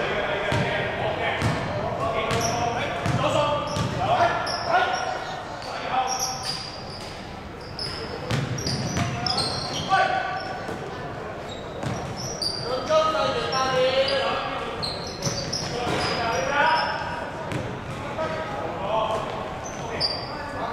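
Basketball game on a hardwood court in a large hall: the ball bouncing as it is dribbled, many short high sneaker squeaks, and players' voices calling out.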